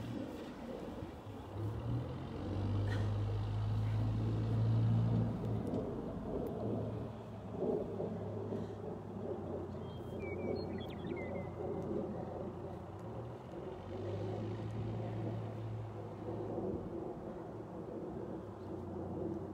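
A low, steady rumbling hum like a running motor, swelling louder twice, with a few brief high chirps about ten seconds in.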